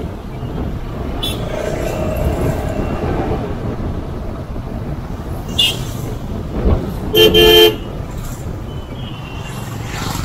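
Town road traffic heard while riding a motorbike: steady engine and road noise, with a vehicle horn honking loudly for about half a second around seven seconds in. A few short, higher beeps of other horns come earlier and near the end.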